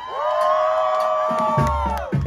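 Live banda music stops for a moment while voices hold one long cheering note, and the crowd cheers. The band's low end comes back in about one and a half seconds in.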